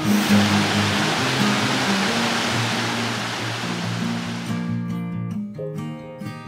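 Rushing water of a rocky mountain stream cascading over boulders, starting abruptly and fading out about five seconds in, over background music.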